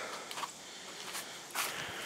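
A few soft footsteps and rustles on dry dirt and leaf litter, faint over a quiet background hiss.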